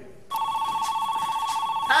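Telephone ringing: a steady, rapidly warbling electronic ring of two close pitches that starts about a third of a second in and keeps going. A voice starts just at the end.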